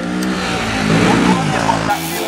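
Motorcycle burnout: the engine revving hard while the rear tyre spins with a loud rushing hiss and squeal. It cuts off suddenly just before the end.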